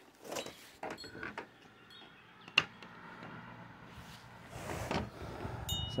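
Light clicks and knocks of a black plastic corner mounting bracket being handled and fitted onto a solar panel's aluminium frame, with one sharp click about two and a half seconds in.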